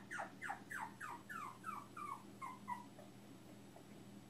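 A small young animal giving a quick series of short, high cries that each fall in pitch, about three a second, growing fainter and dying away after about three seconds.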